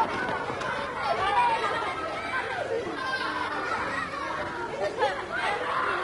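Indistinct chatter of several voices talking over one another, with no single clear speaker.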